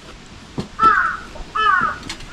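A crow cawing twice, once about a second in and again near the end.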